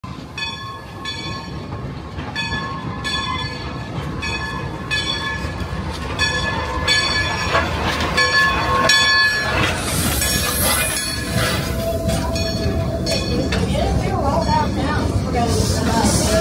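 Dollywood Express steam locomotive No. 192, a 2-8-2, pulling in with its bell ringing steadily about once a second; from about ten seconds in a hiss of steam takes over as it passes.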